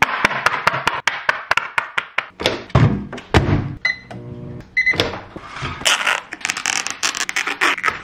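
A fork stabs through the plastic film lid of a ready-meal tray, making a rapid run of sharp clicks, followed by a few heavy thuds. Two short microwave keypad beeps sound about a second apart with a low hum between them, and then the plastic film crinkles as it is peeled off the tray.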